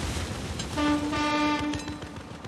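A boat horn sounding one steady, level toot of about a second, starting a little under a second in, over the fading low rumble of an explosion.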